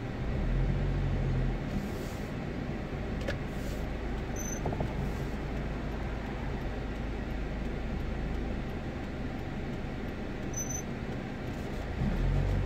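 Steady low engine and road noise heard from inside a car's cabin as it drives slowly through a turn at an intersection.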